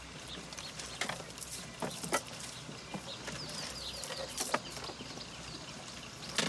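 Scattered rustling and snapping of grass and handled gear over a steady outdoor ambience. A run of short, quick chirps from a bird comes in about halfway through.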